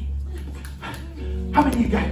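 Excited, raised voices in a church service over a steady low hum, with an instrument coming in a little past halfway and holding a chord under the voices.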